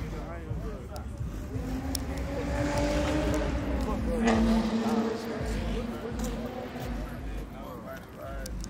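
A motor vehicle passing by on the road: its engine note builds, is loudest about four seconds in as the pitch drops slightly, then fades away.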